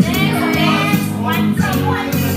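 Group of women singing together over recorded music played from a party loudspeaker.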